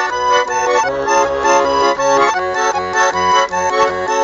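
Garmon, a Russian button accordion, playing an instrumental passage: a melody in the right hand over evenly pulsing bass-and-chord accompaniment.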